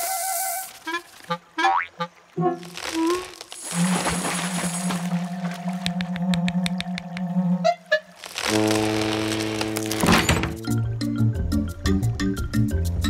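Cartoon soundtrack: background music with comic sound effects. There is a short hiss at the start, then scattered short knocks and blips, a long low held note in the middle, and fuller music with quick ticking near the end.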